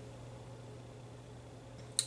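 Quiet room tone: a steady low hum and a faint hiss, with one short click at the very end.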